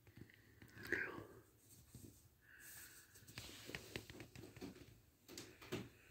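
Near silence: quiet room tone with a few faint soft ticks and a brief faint voice-like sound about a second in.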